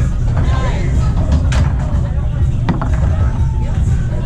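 Foosball play over a steady low rumble and background voices: a couple of sharp knocks of the hard ball against the men and the table walls, about a second and a half in and again near three seconds.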